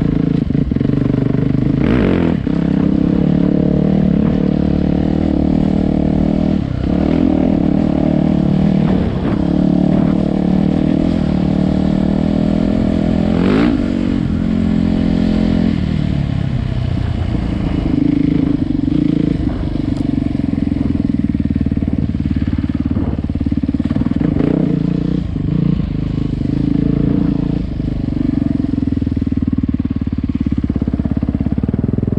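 Yamaha YZ450F single-cylinder four-stroke dirt bike engine running under load on a trail, revs rising and falling with the throttle. About halfway through it revs sharply, then the pitch drops off for a couple of seconds as the throttle is closed.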